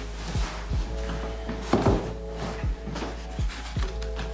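Background music with sustained notes and a steady low beat, over the handling of a cardboard shoebox, set down on a wooden table with a sharper knock about two seconds in.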